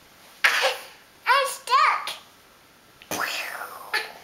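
A toddler's voice: two short, high-pitched calls that rise and fall about a second in, between breathy bursts, with a longer breathy noise near three seconds.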